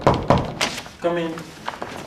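A few quick knocks on a wooden door, about a quarter second apart, followed around a second in by a brief steady-pitched sound as the door is opened.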